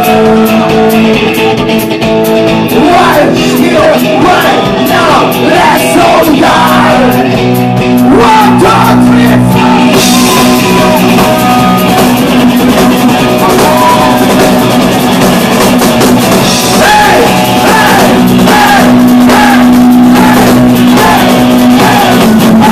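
Punk rock band playing live and loud: shouted, sung vocals over electric guitar, bass and a drum kit.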